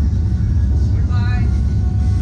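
A steady, loud low rumble, with a short voice call about a second in.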